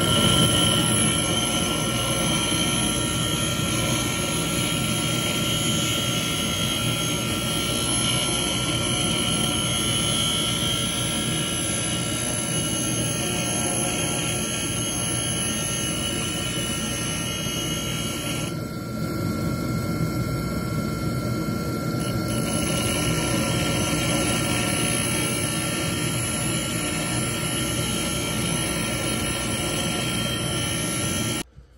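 Foley grinder running a 120-grit copper-bond diamond wheel steadily, grinding the top of a carbide stump grinder tooth held against the wheel. It makes a continuous whir and hiss with a steady whine. The higher hiss thins out for a few seconds about two-thirds of the way through.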